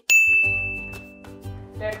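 A single chime or bell-like ding struck once with a sudden start. Its bright high tone rings for about a second and stops, while lower tones fade on after it.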